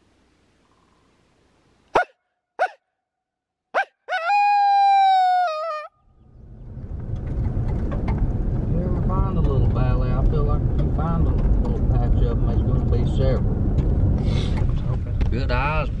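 Vehicle cabin road noise: a steady low rumble with low, indistinct talk under it, rising in after about six seconds. Before it, three short sharp pitched sounds and then a held tone of about two seconds that dips slightly in pitch, of unclear source.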